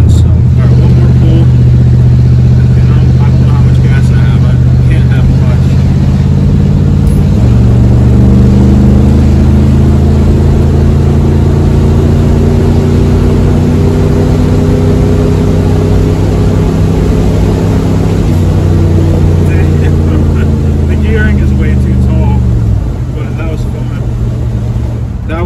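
Ford 302 V8 of a 1982 F-150 under hard acceleration, heard from inside the cab. The engine note climbs steadily, drops once about seven seconds in as the C6 automatic shifts up, climbs again, then falls away sharply near the end.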